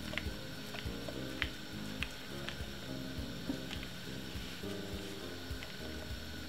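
Quiet background music with steady held notes, under a few faint scattered clicks and soft squelches as a wooden spoon and gloved hands work soft cornmeal batter onto a banana leaf.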